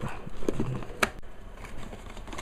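Cardboard retail box being opened by hand: light scraping and rustling with a few sharp clicks, the sharpest about a second in.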